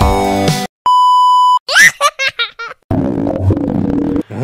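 Meme-edit soundtrack: music stops, a single steady censor-style beep sounds for under a second, then a quick run of short high-pitched cartoonish laughs, and bouncy music starts again near the end.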